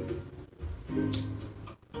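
Soft music cue from a TV drama's soundtrack, a few held notes between lines of dialogue, played through a television's speakers in the room.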